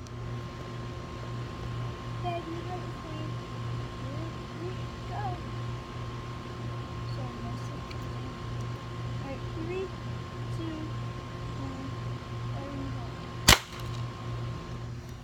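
A single sharp pop from a multi-pump air rifle firing a steel BB near the end, over a steady low hum.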